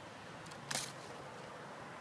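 A G10 knife blade drawn across taut 550 paracord in a sawing cut, giving one short scrape about two thirds of a second in over faint background.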